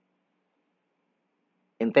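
Near silence, then a narrating voice starts speaking near the end.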